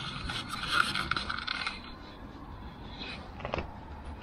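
Rustling and scraping of a soft motorcycle pannier's fabric and straps as the bag is handled to lift it off its rack, loudest for the first couple of seconds, with a single sharp click about three and a half seconds in.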